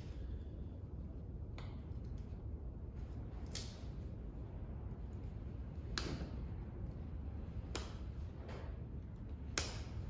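A few sharp clicks of a hand cutter working at a heavy-duty zip tie, about five spread across several seconds, over a low steady hum.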